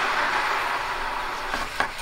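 Freshly smelted thermite iron, held in pliers, quenching in a pan of water: a steady steam hiss and sizzle that slowly fades, with a couple of small clicks near the end.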